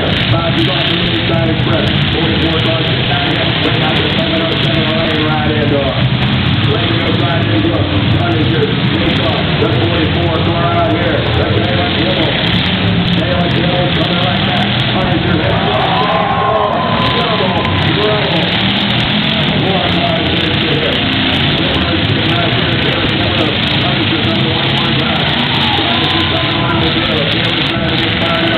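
Several demolition derby cars' V8 engines running together in a steady loud din, with an indistinct public-address voice over them.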